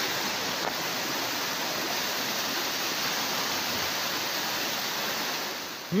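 Fast-flowing floodwater rushing steadily through the breach in a washed-out road crossing, a river in spate after a sudden thaw.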